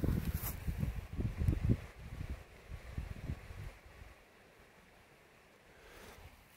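Irregular low rumbling of wind and handling noise on a hand-held phone's microphone for about the first four seconds, then it goes very quiet. No detector tone is heard.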